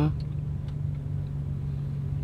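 Car engine idling, heard from inside the cabin as a low, steady rumble and hum.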